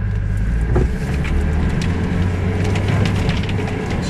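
Toyota Land Cruiser engine running steadily under load off-road, heard from inside the cabin. Scattered knocks and rattles come from the body as it crosses rough ground, with a sharp knock about a second in.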